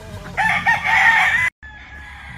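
A gamefowl rooster crowing, the crow cut off abruptly about a second and a half in.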